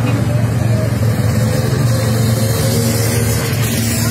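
Lead motorcycle's engine running steadily as it rides ahead of a pack of mountain bikers, over crowd noise.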